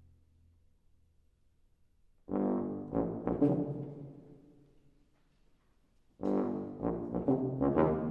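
A wind ensemble's brass plays a loud chord twice, about four seconds apart. Each chord comes in suddenly with sharp accents and then dies away, and it is quiet before each one.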